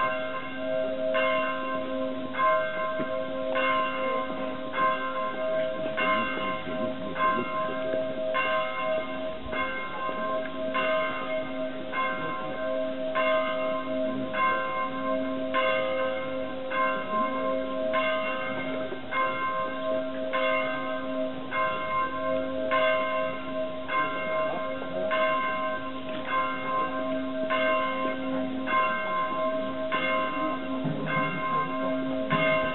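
Church bell tolling steadily, about one stroke a second, each stroke ringing on into the next.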